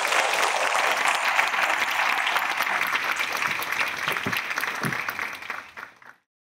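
Audience applauding steadily, a dense patter of many hands clapping, fading away in the last second.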